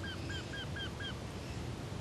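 A bird calling a rapid series of short, arched notes, about four a second, that stops about a second in.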